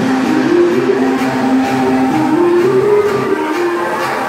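Loud music playing over a fairground ride's sound system: long held melody notes step up and down in pitch over a steady lower line.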